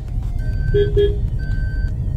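A vehicle's reversing beeper sounds about once a second, each beep about half a second long, over a steady low engine rumble.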